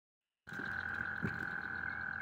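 A small bass flopping on a wooden dock, its body slapping the boards twice, over a steady high-pitched tone.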